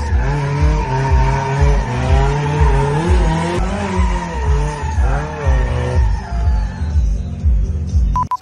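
A turbocharged Chevrolet Chevette drifting, its tyres squealing in wavering tones that rise and fall, over music with a heavy, steady bass beat.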